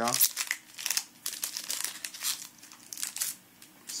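Foil Yu-Gi-Oh booster pack wrapper crinkling in irregular rustles as it is handled and opened, with cards sliding against each other.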